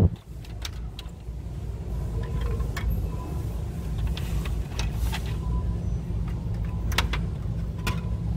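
Glass nail polish bottles being handled and set onto a plastic store display shelf: a sharp knock at the start, then a few scattered light clicks, over a steady low hum.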